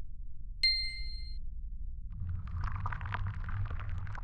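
Logo-intro sound effects: a single bright bell-like ding about half a second in that rings for under a second, then from about two seconds in a fizzing, glittery spray of many tiny clicks over a low rumble as the logo dissolves into particles.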